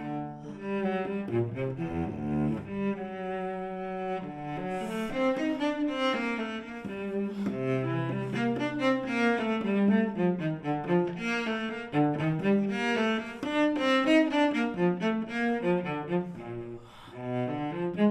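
Solo cello, bowed, playing a flowing line of quick notes, with a low note held for a moment about eight seconds in.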